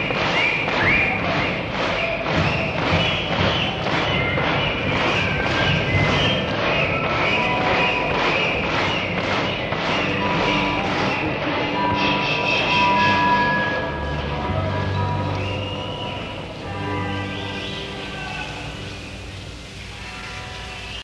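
Live rock band music from a 1973 concert recording: a steady beat about three times a second under pitched instrument notes. About twelve seconds in the beat stops, leaving held notes and low bass, and the sound fades toward the end.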